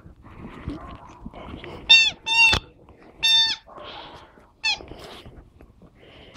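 Rubber chicken squeaky toy squawking four times as a dog bites down on it, the first two close together and the last one short, with rustling between the squawks.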